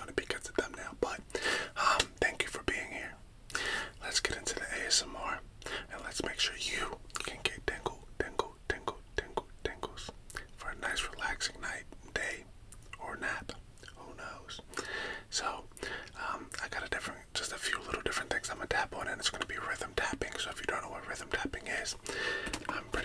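A man whispering close to the microphone: soft, breathy ASMR-style talk.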